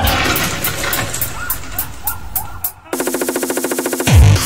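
Frenchcore electronic music in a break with the kick drum dropped out: a noisy synth wash with small warbling glides, then, about three seconds in, a rapid buzzing stutter of about ten pulses a second, a build-up roll leading back into the kicks.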